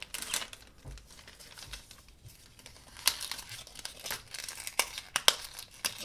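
A plastic blind-bag packet being torn open by hand, with the wrapper crinkling. Faint at first, then a run of sharp crackling tears about halfway through.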